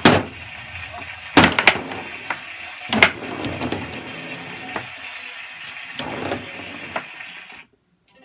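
Foosball table in play: sharp knocks as the ball is struck by the plastic figures and bangs against the table's walls, a few seconds apart, over a steady hiss. The sound cuts off suddenly near the end.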